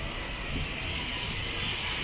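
Steady open-air ambience: an even low rumble with a hiss over it, and no distinct event standing out.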